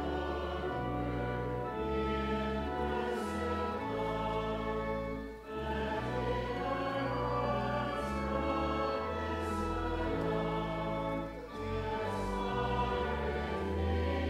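Church music: voices singing in held chords over a sustained organ accompaniment with deep bass notes. The music moves in phrases, with short breaks about five and a half and eleven and a half seconds in.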